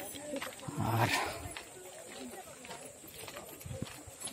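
Voices of a group of people talking in the background, with one louder call about a second in.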